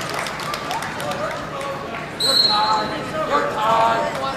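Voices of coaches and spectators shouting in a gym during a wrestling match, louder in the second half, with a short, high, steady whistle blast a little past halfway.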